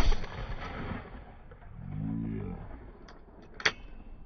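A single shotgun shot from an over-and-under at a clay target, its report echoing away over about a second. Near the end come two sharp clicks as the gun's action is broken open.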